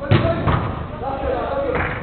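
A football kicked hard: one sharp thud just after the start, followed by players shouting.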